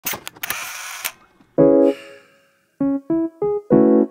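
Intro sound effects: a camera-shutter-like series of clicks and a whirr, then a short electric-keyboard jingle. The jingle is one chord followed by four quick notes stepping up in pitch, ending on a chord.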